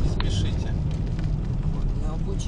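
Steady low rumble of a car's engine and tyres heard from inside the cabin while driving in traffic, with one short click just after the start.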